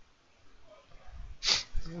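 Quiet room tone, then a man's voice starting to speak near the end, opening with a short sharp hiss.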